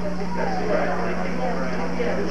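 Indistinct voices of people talking over a steady low hum.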